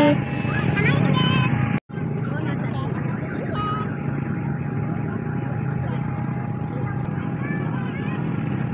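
Outdoor ambience: a steady mechanical hum with faint distant voices, cut by a brief dropout about two seconds in.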